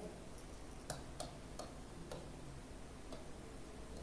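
Several faint, scattered taps and clicks of a pen on a writing board as a word is written.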